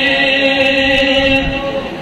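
A man's unaccompanied voice holding one long, steady sung note in the chanted recitation of an Urdu devotional nazm, fading near the end.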